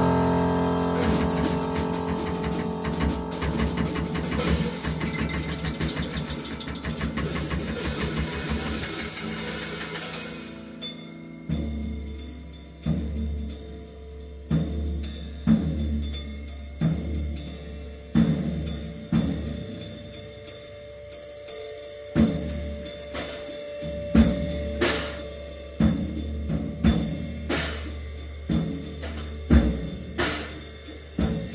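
Free-improvised avant-jazz: a dense, loud ensemble texture fades over the first ten seconds, then thins to sparse, irregular drum-kit hits, about one a second, each with a low drum thud, under a held tone.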